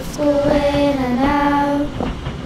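A child singing a slow melody in long held notes, the pitch dipping and breaking briefly about halfway through before the note is taken up again.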